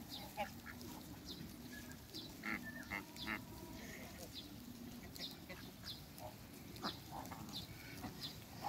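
A flock of domestic geese calling softly while grazing. Short high peeps repeat about once or twice a second, and a few louder calls come about two and a half to three and a half seconds in.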